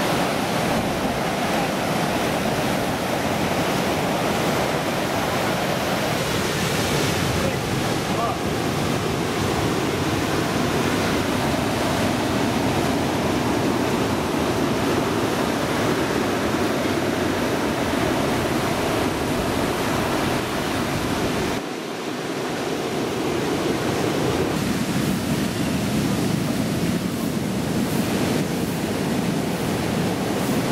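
Rough storm surf breaking on a sandy beach: a steady, unbroken wash of waves, with a brief drop in level about two-thirds of the way through.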